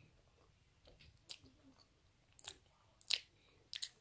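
Faint chewing of a mouthful of doughnut, with a few short sharp mouth clicks spread through it; the loudest comes about three seconds in.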